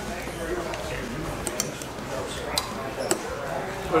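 Metal spoons and forks clinking a few times against plates and a glass sundae dish while eating, over a low murmur of voices.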